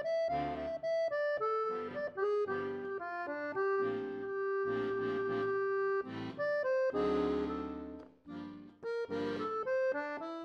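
Solo accordion playing a groovy pop-style melody over short, rhythmic bass and chord notes, with one long held melody note in the middle.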